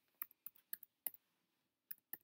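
A run of faint, sharp clicks, about eight in under two seconds, from hands on the laptop recording the podcast: key or trackpad presses and handling as the recording is stopped.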